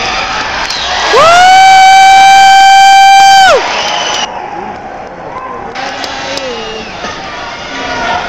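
A loud horn held for about two and a half seconds, its pitch sliding up as it starts and dropping away as it stops, sounding the start of a round; a crowd cheers around it.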